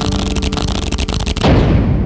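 Cinematic sound effect on the soundtrack: a fast run of sharp clicks for about a second and a half, then a deep boom about 1.5 s in that rings out and fades slowly.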